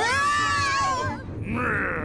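A cartoon character's loud, high-pitched vocal cry. It starts suddenly, holds for about a second and wavers downward at the end. A shorter, rougher cry follows about a second and a half in.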